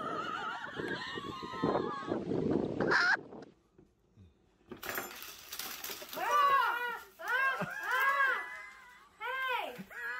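Voices for the first three seconds, then a brief near-silent gap. In the second half come a woman's high-pitched excited squeals: four cries that each rise and fall in pitch.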